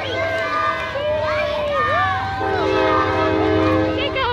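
A long, steady horn blast sounding several pitches at once, over voices and a low rumble from the street.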